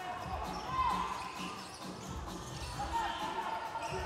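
A basketball being dribbled on a hardwood court, bouncing repeatedly, with faint voices in the hall.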